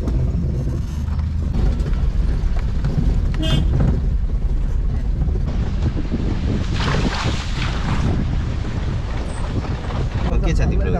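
Small car driving along, heard from inside the cabin: a steady low engine and road rumble with wind buffeting the microphone, and a louder rush of noise about seven seconds in.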